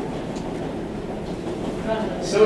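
Indistinct low murmur of an audience talking quietly in a lecture room, over a steady low rumble of room noise.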